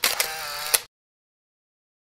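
Camera shutter sound effect: a sharp click, a short whirring wind-on and a second click, all in under a second.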